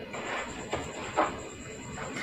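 Kitchen knife slicing chayote on a cutting board: a few soft cuts of the blade through the squash.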